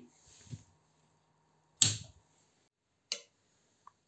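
Two sharp clicks, a louder one a little under two seconds in and a fainter one about a second later, as the primary DC power supply is switched off and the small relay switches the LED load over to the backup battery. A faint steady hum fades out after the first click.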